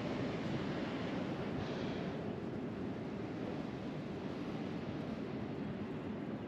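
Steady, even rushing of wind on the microphone, with no distinct events.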